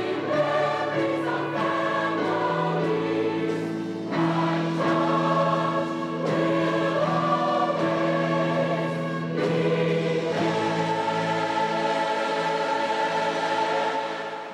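A large mixed choir of adults and children singing in long held notes, with short breaks between phrases about four and ten seconds in.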